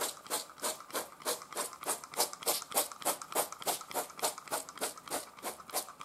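Trigger-pump EVO oil sprayer pulled in quick succession, each pull a short hiss of oil mist, about three a second.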